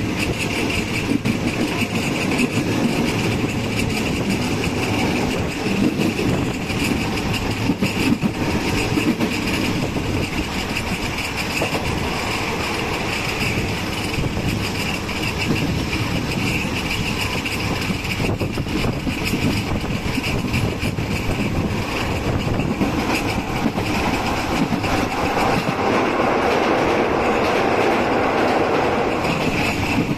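Steady running noise of a passenger train coach in motion: wheels rumbling and clicking along the rails, a little louder in the last few seconds.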